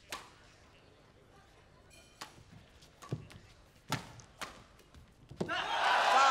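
Badminton rackets striking a feathered shuttlecock in a fast rally: about six sharp hits at uneven gaps of roughly half a second to a second. Near the end the crowd bursts into cheering and applause as the point is won.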